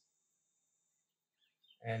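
Near silence, with a faint high-pitched whine that fades out within the first second, then a single spoken word near the end.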